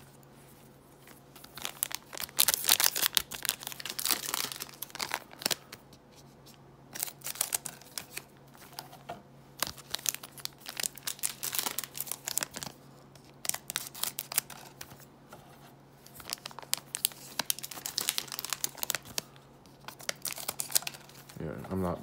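Scissors snipping through foil trading-card pack wrappers, the wrappers crinkling as they are handled. The snipping and crinkling come in bursts that start and stop, over a faint steady low hum.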